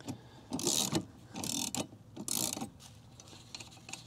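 Ratchet socket wrench clicking in three short runs about a second apart, its pawl ratcheting on the back-strokes as it loosens a 17 mm lawn mower blade nut.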